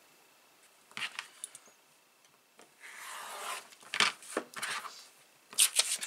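A sheet of notepad paper being cut to size on a cutting mat: a scratchy cutting stroke lasting about a second, then clicks and rustling as the paper is handled.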